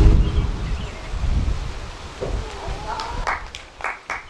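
Clapping begins about three seconds in, evenly paced at about four claps a second, just after a sung song ends, with a voice calling out as it starts. Before it, a low rumble fades away over the first two seconds.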